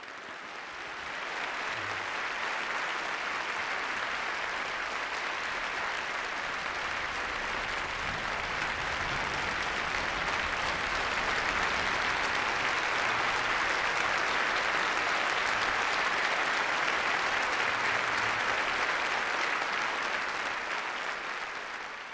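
A large audience in an auditorium applauding steadily after a talk, a standing ovation. The clapping builds over the first couple of seconds, holds, and fades out at the very end.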